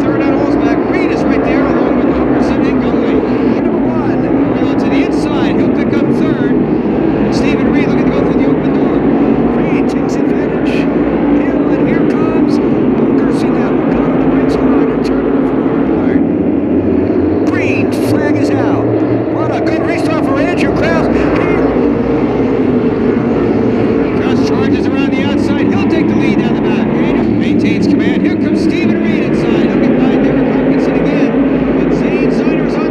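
A pack of modified race cars running together on an oval track, their engines droning steadily at racing speed; the sound shifts in character about halfway through.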